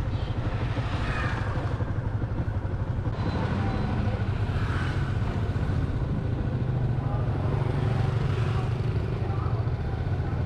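Motorbike engine running steadily while being ridden, a low even rumble.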